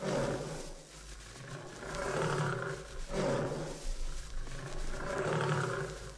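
A lion's low, drawn-out calls, about five in a row, each lasting around a second with short pauses between.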